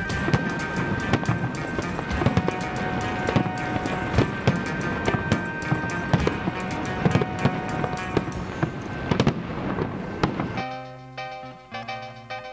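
Fireworks popping and banging in many irregular bursts over rock music, which cuts off about ten and a half seconds in. A quieter piece of music with steady notes follows.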